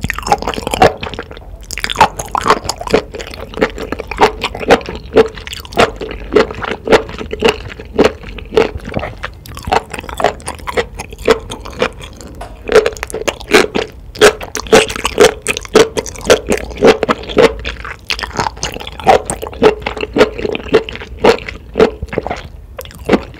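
Close-miked wet chewing of enoki mushrooms coated in spicy black bean sauce: a steady run of squishy mouth sounds, about two or three loud ones a second.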